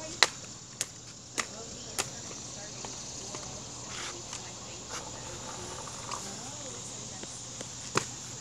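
Insects, most likely crickets, chirring faintly and steadily in the grass, broken by a few sharp taps, four of them about half a second apart in the first two seconds.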